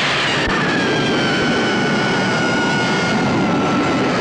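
Horror film trailer sound effect: a loud, steady rushing drone with several high whining tones that slide slowly down in pitch, following a woman's scream.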